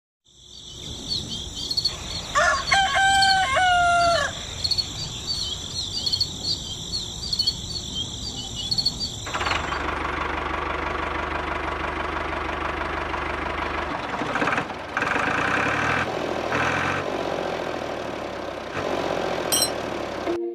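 Birds chirping steadily, with a rooster crowing once, a long call of about two seconds, near the start. About nine seconds in, the chirping stops and a steady whirring noise takes over.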